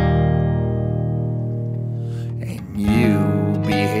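Acoustic guitar music: a chord is struck and left to ring and fade, then a new chord is struck about three seconds in.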